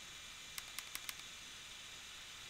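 Four quick, light clicks in a row about half a second in, a fraction of a second apart, over a faint steady hiss: computer mouse clicks.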